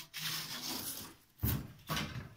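A plastic fly swatter scraping and rubbing against a kitchen worktop as it is picked up, followed by two dull knocks in the second half.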